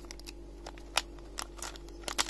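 A small clear plastic bag of dice being handled in the fingers: a few light, scattered crinkles and ticks of the thin plastic.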